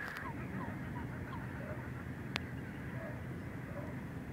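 Open-air ambience of a steady low rumble, with a distant bird giving a quick run of short falling calls in the first second and a half and a few fainter notes later. A single sharp click sounds a little past the middle.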